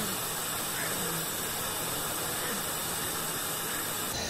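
Hot air rework gun blowing a steady hiss of hot air onto a surface-mount chip, heating it until its solder melts.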